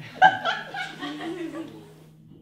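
Laughter, loudest just after the start and fading out by about three-quarters of the way through, over a steady low electrical hum.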